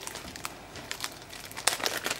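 Light crinkling and rustling from trading cards and their plastic packaging being handled, with scattered soft clicks and a short denser burst of crinkle near the end.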